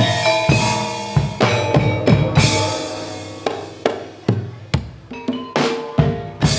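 Javanese gamelan music for a jaranan dance: drum strokes at an uneven pace over ringing metallophone and gong tones.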